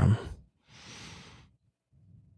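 A spoken phrase ends, then one person breathes out once near the microphone: a short, breathy exhale of under a second.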